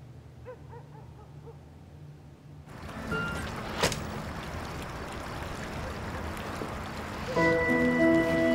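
Soft, low background music, then a steady hiss of outdoor ambience with a single sharp click just under halfway through; near the end a louder music cue of several held notes swells in.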